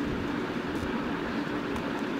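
Steady background hum with faint low tones and no speech, and a couple of faint soft clicks.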